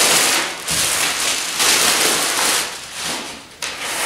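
Thin clear plastic bag crinkling and rustling as a backpack is pulled out of it. It comes in bursts, with a lull about three seconds in.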